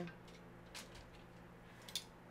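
A near-quiet kitchen with a few faint light clicks and one short, sharper click just before the end.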